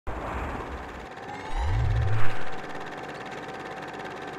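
Title-sequence sound effects: a low rumble, then a deep rising sweep that builds to a loud whoosh-hit about two seconds in, over a steady thin tone.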